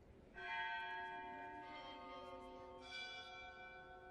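Bells rung at the elevation of the chalice during the consecration at Mass. Three strikes about a second and a quarter apart, each at a different pitch, ring on and overlap.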